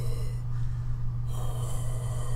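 A man blowing a wide, slow tuba-player's airstream out through an open aperture onto his palm, a breathy rush of air: 'that Darth Vader kind of' sound. One blow trails off about half a second in and another starts after a second, over a steady low hum.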